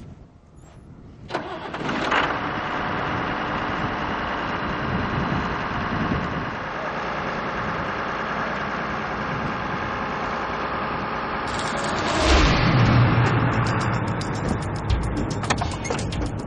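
A John Deere tractor's diesel engine starts up about a second in and runs steadily. Near the end a louder burst with a low hum rises over it.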